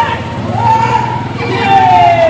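Men's long shouted calls over a steady low engine hum, one call sliding down in pitch near the end.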